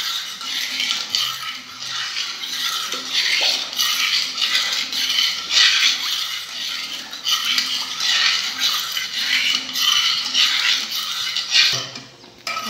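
Metal spoon stirring a thin milk mixture in an aluminium pot, scraping the bottom and sides in repeated strokes about once a second, so the cornstarch dissolves before the pot goes on the heat.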